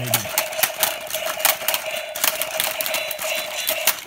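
Toy remote-control combat robots' small electric motors whining steadily, with rapid, irregular plastic clacks as their punching arms swing and hit each other.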